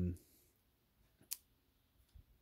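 A man's voice trailing off, then near silence broken by a single sharp click about a second and a quarter in.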